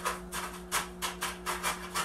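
A chopstick jabbed again and again into gritty lava-rock and pumice bonsai soil, a rough crunching scrape about three times a second. The soil is being worked down among the roots to close air pockets. A faint steady hum runs underneath.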